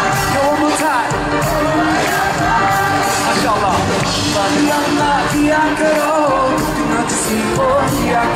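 Live band music: a male voice sings a winding, ornamented melody over bass, drums and keyboards, with a steady drum beat.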